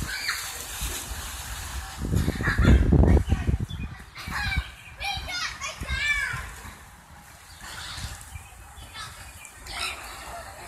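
Children shouting and playing in a swimming pool, with water splashing. A loud low rumble comes about two seconds in and lasts a second or so; high children's calls follow.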